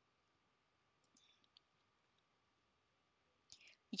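Near silence, with a few faint computer mouse clicks about a second and a half in.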